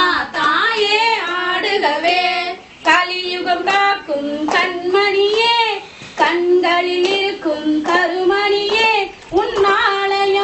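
A woman singing a Tamil devotional song to the goddess, unaccompanied and in a high voice, in phrase-long lines with brief pauses for breath between them.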